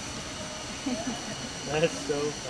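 Indistinct voices with no clear words, coming in about halfway through over a steady background hiss.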